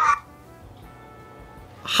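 A played-back audio clip with a voice-like, pitched sound cuts off abruptly a fraction of a second in. A faint steady hum with a few faint held tones follows, until a man starts speaking near the end.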